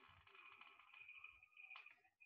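Near silence: faint room tone, with a very faint steady high hiss.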